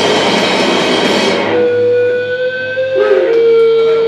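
Hardcore punk band playing live with distorted electric guitar and drums, stopping abruptly about a second and a half in. Guitar amplifiers are left ringing with steady feedback tones, one of them wavering briefly near the end.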